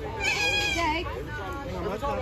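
Voices of children and adults at a gathering. A child's high, wavering voice comes in loud about a quarter of a second in, over the other talk.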